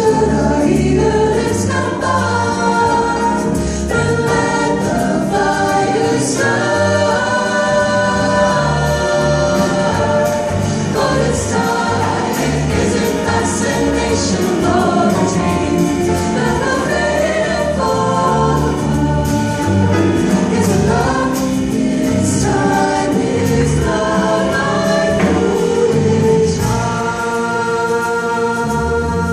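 Mixed vocal jazz choir singing held close-harmony chords, with plucked upright bass notes moving beneath the voices.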